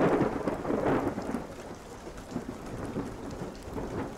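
Rain falling with a roll of thunder, loudest in the first second or so and then easing into steady rain.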